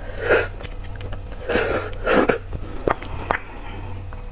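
Loud slurping as marrow is sucked from a braised beef marrow bone: several noisy sucking bursts in the first half, then two short sharp clicks near the end.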